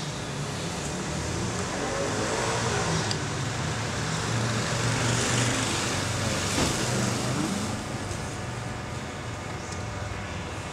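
Steady road traffic noise with a low engine hum, swelling slightly as vehicles pass near the middle.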